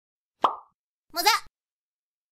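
A single cartoon-style pop sound effect, then about half a second later a brief high-pitched voice exclamation.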